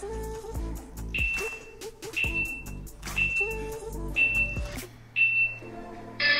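Background music with a steady beat, over which an interval timer gives five short, high beeps about one second apart, counting down the last seconds of the exercise interval.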